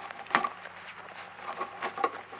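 A few sharp knocks and scraping clicks from a spotted fawn's body right against the trail camera, the loudest about a third of a second in and smaller ones near the end.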